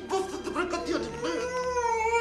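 A man crying out in pain as he is hoisted by his tied wrists: a few short cries, then one long drawn-out wail that rises slightly in pitch.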